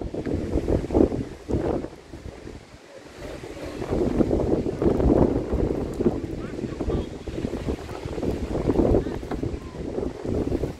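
Wind buffeting the microphone in uneven gusts, easing off briefly about two to three seconds in, with faint voices mixed in.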